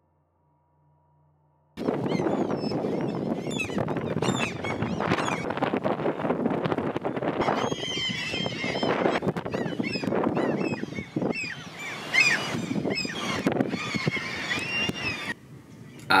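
Gulls calling, many overlapping cries over a steady rush of noise, starting suddenly about two seconds in and stopping shortly before the end.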